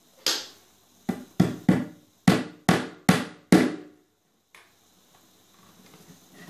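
A hammer tapping small nails into a plywood board: eight quick, sharp blows, each with a short ring. One blow comes first, then a group of three about a second in, then four more, ending a little after the halfway point.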